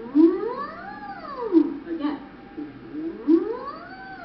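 A woman's voice sliding on a hummed 'ng' as a vocal warm-up siren: one smooth glide up and back down, then a second after a short pause about two and a half seconds in.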